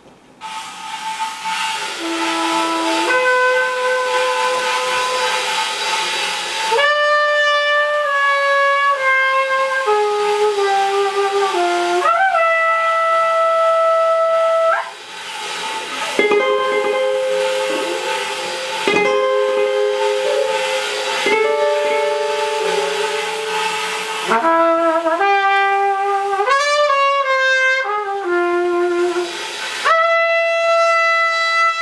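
Cornet, hollow-body electric guitar and drums playing jazz together, with sustained, bending melodic notes over cymbal wash. The music starts about half a second in after a near-quiet moment, and briefly drops in level around the middle.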